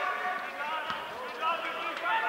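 Men shouting calls across a football pitch, with a single dull thud of a football being kicked about a second in.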